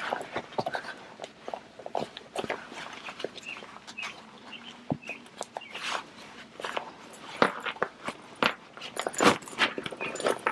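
Fabric rustling and scuffing in quick, irregular handling noises as a sewn panel is worked right side out through its turning gap, with a louder swish near the end.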